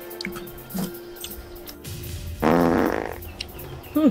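A loud fart lasting under a second, a little after two seconds in, over soft background music.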